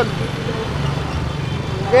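Low, steady engine rumble of a van creeping along close behind, with road noise. A loud shout starts at the very end.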